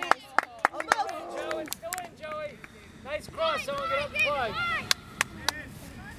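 Shouting voices of players and sideline spectators at a soccer game, with a quick run of sharp claps in the first second and a few single sharp knocks later.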